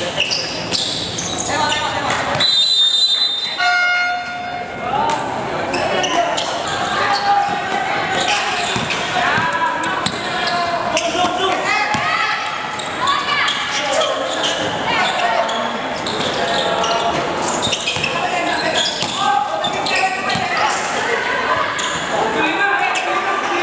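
Live basketball game sound in a large gym: the ball bouncing on the court under voices of players and spectators shouting. About two and a half seconds in there is a short high whistle, then a brief buzzer-like tone.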